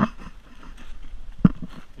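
Knocks from a rowing shell's hull being handled: a sharp knock at the start and a louder, deeper thump about a second and a half in.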